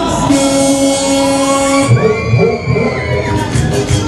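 Loud dance music from a funfair ride's sound system: a held synth chord, then a thumping beat comes in about halfway.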